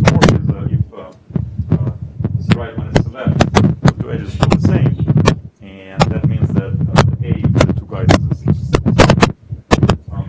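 A man's voice, muffled and hard to make out, with frequent sharp crackling clicks and a steady low hum over it.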